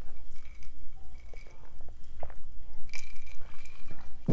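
A pause in speech: steady low hum with a few faint short clicks.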